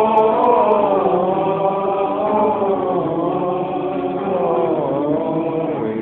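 Voices singing together in a slow, chant-like church hymn, holding long notes that glide gently from pitch to pitch.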